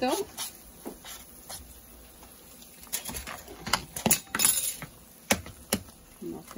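Utensils knocking against a frying pan of scrambling eggs, then a cluster of sharp taps about three seconds in and a short hiss a little later, as an egg is cracked and dropped into the hot pan.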